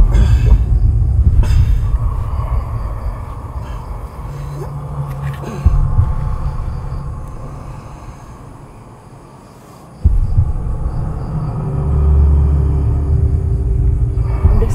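Deep, low rumbling drone of horror-style sound design. It fades down over several seconds, cuts back in suddenly about ten seconds in, and a low tone swells near the end.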